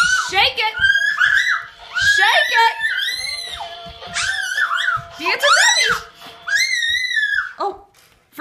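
Toddlers giving a string of high-pitched squeals and shrieks, sliding up and down in pitch, over music playing.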